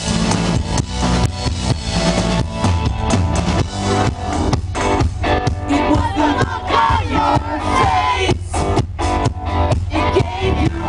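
Live rock band playing through a stage PA: a full drum kit with kick and snare drives the beat under electric guitar and a stage piano.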